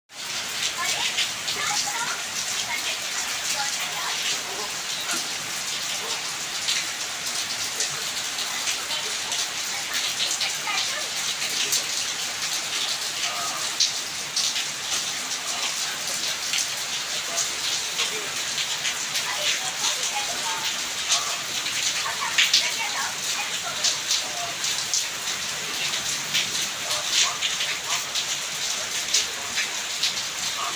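Heavy rain falling steadily onto waterlogged ground: a dense, even hiss full of sharp individual drop hits.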